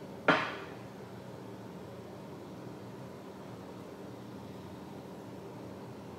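A single sharp knock of a hard object about a third of a second in, fading quickly, then a steady low hum of room noise.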